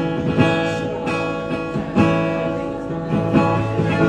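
Acoustic guitar strumming chords, each strum left to ring, an instrumental passage with no singing.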